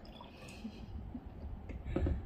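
Water poured briefly from a ceramic mug into a glass beer mug, a short trickle in the first second, over a steady low rumble. A light knock comes at the very end.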